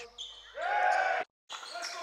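Indoor basketball game sounds: a loud, held shout begins about half a second in and is cut off abruptly. A brief gap of silence follows, then court noise with voices.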